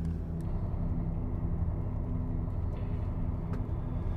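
Steady low rumble of a car's engine and road noise heard inside the moving cabin, with a faint hum and a couple of faint clicks.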